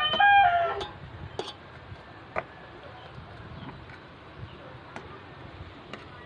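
The end of a rooster's crow, a loud drawn-out call that stops about a second in. After it, quiet with a few faint clicks.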